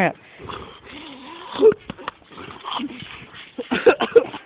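Breathing and non-word vocal sounds in short, irregular bursts from a young man coming round after being choked unconscious.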